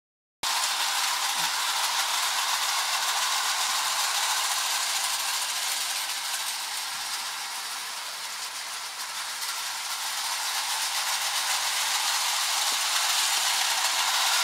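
Hornby O gauge tinplate model train running on tinplate track: a steady high metallic rattle of wheels and mechanism with rapid fine clicking. It starts abruptly, eases a little midway and then grows louder.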